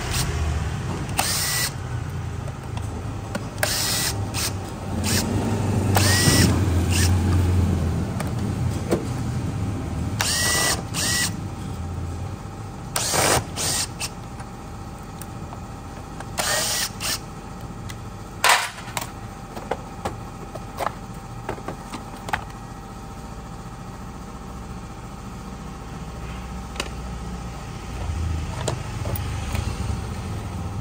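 Cordless drill-driver run in about a dozen short bursts, each a brief rising whir, as it spins screws out of a scooter's CVT side cover. Under it is a low vehicle rumble, strongest in the first eight seconds and again near the end.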